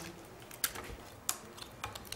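Laminated paper cards being laid and moved about on a tabletop: a few light, irregular clicks and taps, three of them sharper than the rest.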